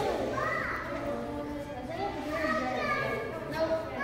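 Indistinct background chatter of children's voices and other people talking, with no one voice standing out.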